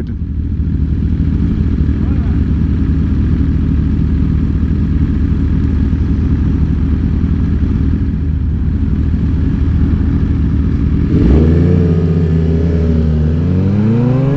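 Sportbike engine idling steadily at a stop, then the revs climb and fall as the bike pulls away about eleven seconds in.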